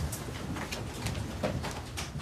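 Low room rumble of a press briefing room with faint rustling and a few small clicks as people move about after the briefing ends.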